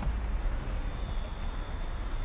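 Steady outdoor background noise: a low rumble with a faint, steady high-pitched whine above it.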